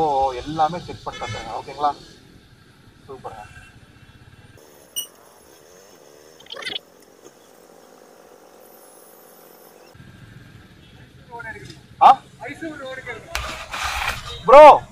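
Speech in the first couple of seconds and again in the last few, with a quieter stretch in the middle holding only faint background noise and a short rising sweep.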